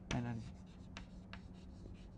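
Chalk writing on a blackboard: a few short, faint taps and scratches as a word is chalked out.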